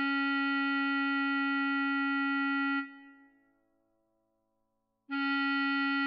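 Bass clarinet holding one long, steady note that stops about three seconds in and rings away into silence. After a pause of about two seconds, a second note starts near the end.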